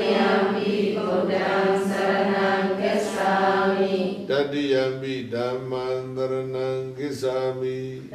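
A group of voices chanting a Buddhist Pali chant in unison on a steady, held pitch, with short pauses for breath about four, five and seven seconds in.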